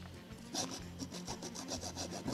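Live foley scratching: a quick, even run of rubbing strokes starting about half a second in, like a pen scribbling on paper, standing for the character writing.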